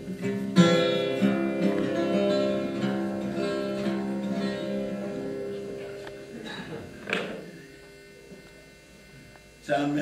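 Twelve-string acoustic guitar: a chord struck about half a second in rings out and slowly fades away over several seconds. A brief rustle of handling noise follows near the end.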